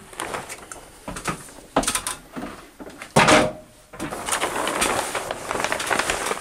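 Polyethylene vapor-barrier sheet rustling and crinkling as it is pulled and smoothed against the ceiling joists, steady from about four seconds in. Before that come two sharp hits, about two and three seconds in, the second louder: hammer-stapler strikes tacking the plastic up.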